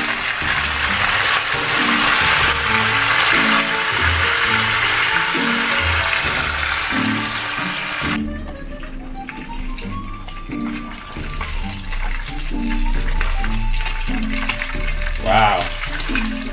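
Chicken pieces frying in hot oil, a dense steady sizzle, over background music with a repeating bass line. About eight seconds in the sizzle drops away sharply, leaving mostly the music with fainter frying.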